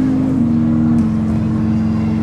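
Hammond console organ holding sustained chords over a low bass line. The chord shifts about half a second in and again at about a second.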